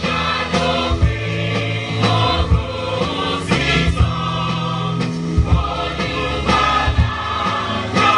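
A choir, mostly women's voices, singing a gospel hymn in parts, over held low bass notes and sharp beats of a percussion accompaniment.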